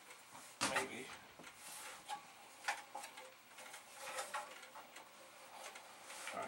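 Knocks and clatter of a metal computer chassis and plastic parts being lifted and handled, the loudest knock just under a second in, with a few lighter knocks after.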